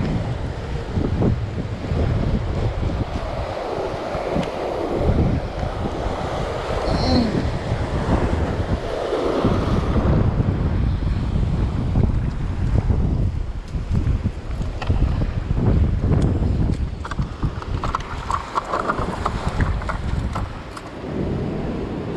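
Wind buffeting the microphone in uneven gusts over the sound of surf breaking on rocks.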